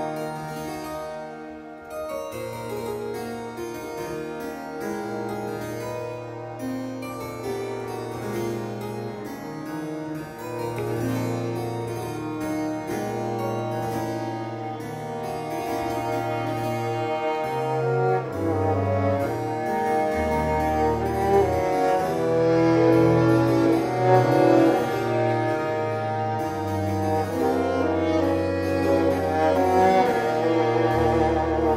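A period-instrument chamber ensemble plays a contemporary piece. A harpsichord plays rapid, insistent figures against two baroque violins, a baroque viola and long held bass notes on a viola da gamba. The music grows louder through the second half.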